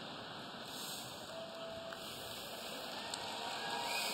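Large audience laughing and applauding, a steady crowd noise that builds slightly toward the end.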